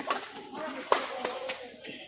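Badminton rackets hitting the shuttlecock in a fast doubles rally: several sharp smacks, the loudest about a second in, over spectators' chatter.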